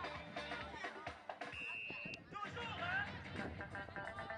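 A single short, steady whistle blast about one and a half seconds in, typical of a referee's whistle during a youth football match, over shouting voices and music.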